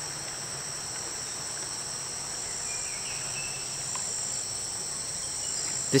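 A steady, high-pitched chorus of insects, several shrill tones held without a break.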